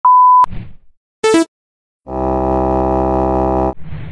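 Intro sound effects: a steady electronic beep for about half a second that ends in a click, a quick blip falling in pitch just over a second in, then a loud buzzing electronic tone for about a second and a half that cuts off suddenly, followed by a fading rustle.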